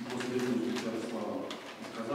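A man's voice speaking low and drawn out, with words not made out, as he reads from the pulpit.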